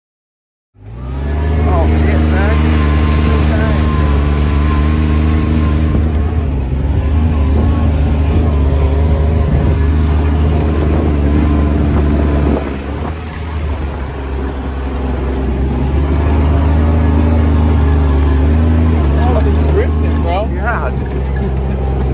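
Kubota RTV 900's three-cylinder diesel engine running hard as the utility vehicle is driven through mud and standing water, a steady loud drone that eases off about halfway through and then builds back up.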